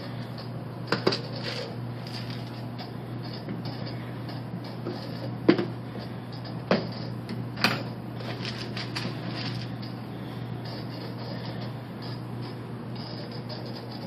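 Steady low hum of aquarium equipment, with four or so sharp clicks and knocks scattered through the first half.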